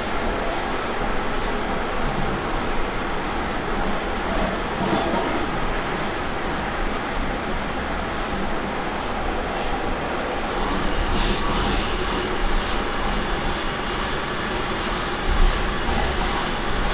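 Moscow metro train running between stations, heard from inside the carriage: a continuous rumble of wheels and running gear. A few faint clicks come in the last few seconds, with a single short knock just before the end.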